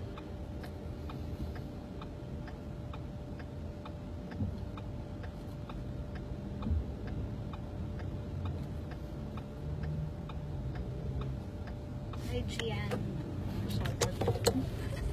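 A car's turn-signal indicator ticking steadily, a little under two clicks a second, over the low rumble of the car in motion heard from inside the cabin.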